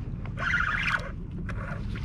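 A hooked black sea bass being reeled in to the kayak: a short rushing noise from the reel and line or the water, about half a second in, over a steady low hum.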